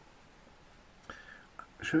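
Quiet room tone, a short breathy sound a little after a second in, then a man's voice beginning near the end.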